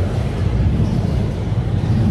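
Steady, fairly loud low rumble of background noise, with no ball strikes heard.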